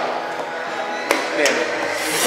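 A single sharp clack about a second in as a chess piece is set down on the board during a blitz move, with a fainter knock just after.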